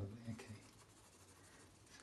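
Pencil drawing on sketchbook paper: faint, scratchy strokes.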